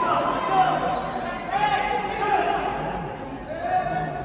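Amateur boxing bout in a large hall: punches and footwork thud in the ring, with voices calling out that echo in the room.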